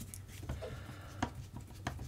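A screwdriver backing kingpin bolts out of an RC car's plastic front hub: faint scraping, with three light clicks spread across the two seconds.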